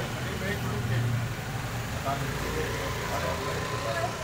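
Low, steady motor-vehicle engine rumble, strongest about a second in, under faint talk.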